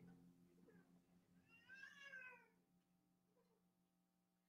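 Near silence with a faint steady hum. About two seconds in, a brief, faint high-pitched cry rises and falls.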